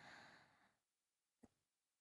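A woman's soft, quiet exhaled breath like a sigh, fading out within the first second, then a single faint short click about a second and a half in.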